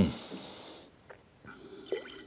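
A breathy rush of air, under a second long, from a wine taster working a mouthful of red wine, then a few faint low sounds.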